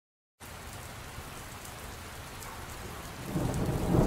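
Steady rain with low rumbling thunder, growing louder near the end.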